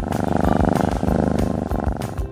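A cat purring loudly with a fast, rattling pulse; it starts suddenly and dies away just before the end, over background music with a steady beat.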